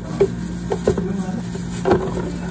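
Watermelon chunks dropping from a plastic bag into a plastic blender jug: a handful of short, soft knocks and thuds, the loudest near the end. A steady low hum runs underneath.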